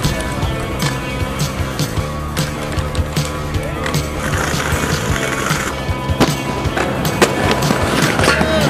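Skateboard sounds, with wheels rolling and sharp board impacts, over music with steady bass notes.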